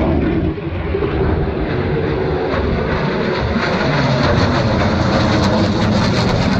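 Jet aircraft engine noise as military jets fly low past, a steady noisy rush that grows brighter and slightly louder in the second half.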